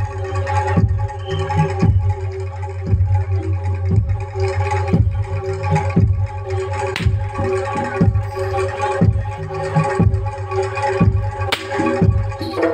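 Live Javanese jaranan gamelan music: regular hand-drum (kendang) strokes over steady ringing gong and metallophone tones. Two sharp cracks cut through, about seven and eleven and a half seconds in.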